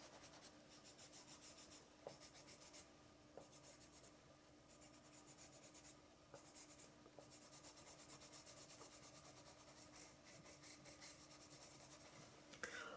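Pencil eraser rubbed quickly back and forth over a bare wooden surface, erasing pencil guide lines: faint, rapid strokes in short spells with brief pauses.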